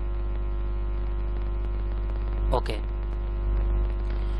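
Steady electrical mains hum picked up in the narration recording, a constant low buzz with many even overtones, under one short spoken "ok" near the end.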